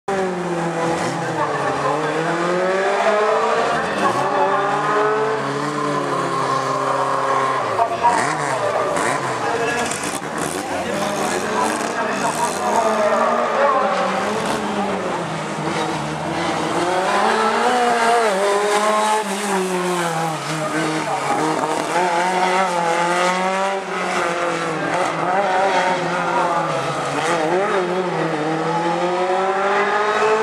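A Simca 1000 Rallye's rear-mounted four-cylinder engine is revved hard and let off again and again as the car accelerates and brakes between slalom gates. The pitch rises and falls every second or two.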